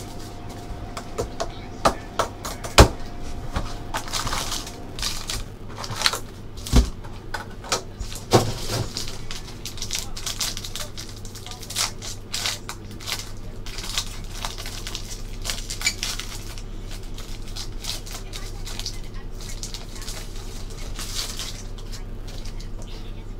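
Hands unwrapping a sealed trading-card hobby box and tearing open its foil card pack: irregular crinkles, rustles and sharp clicks of plastic wrap, foil and card stock being handled.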